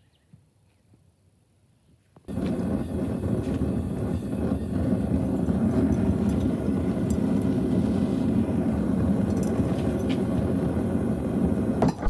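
Near silence for about two seconds, then a propane forge's burner running with a steady, loud, even rushing noise while rebar is heated in it for forging.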